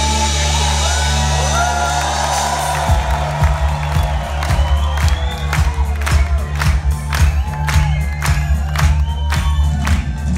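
Live band playing with a held low synth chord, then a drum beat coming in about three seconds in and continuing evenly, while the crowd cheers and whoops over it.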